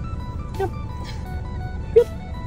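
Background music, a simple melody of held notes, over the steady low rumble of a car's cabin on the road.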